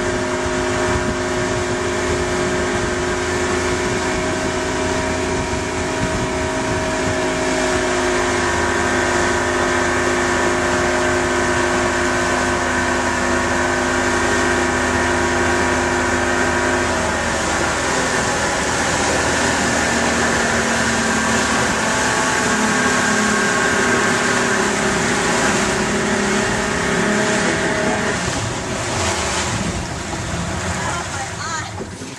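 Motorboat engine running steadily under load while towing, with wind and rushing water. About halfway through its pitch drops as it slows, then it steadies again at a lower speed.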